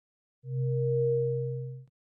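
Synthesized electronic tone sound effect: one steady held note, starting about half a second in and cutting off sharply after about a second and a half.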